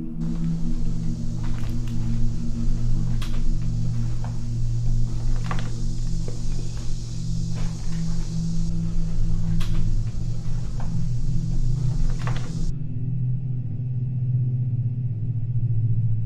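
Low, steady droning ambient background music, under a hiss with a few scattered faint knocks and clicks; the hiss and knocks cut off abruptly about three-quarters of the way through while the drone carries on.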